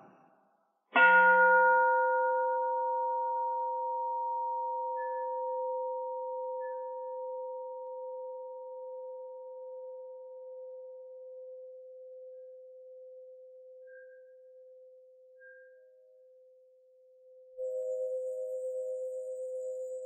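Buddhist bowl bell struck once, its low tone ringing on with higher overtones and fading slowly over about fifteen seconds, sounded to open a pause for silent contemplation. Near the end a softer ring starts with a pulsing waver.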